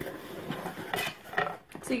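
Hands handling and opening mailed box packaging: rustling with a couple of light clicks and clinks, about a second in and again a little later.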